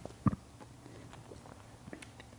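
A few faint clicks from folding pocketknives being handled and folded, one about a quarter second in and a couple more near the end.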